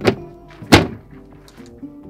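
Two sharp thunks from hands working an electrical switch cabinet. The second and louder comes about three-quarters of a second after the first.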